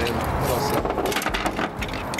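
A hand rummaging through a dive bag of objects recovered from a river: small hard items click and clatter against each other in quick, irregular knocks.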